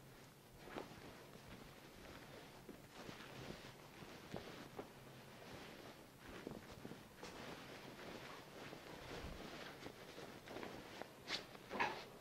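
Faint, irregular rustling of bed sheets and blankets being pulled and gathered by hand, with a few soft taps and one sharper click near the end.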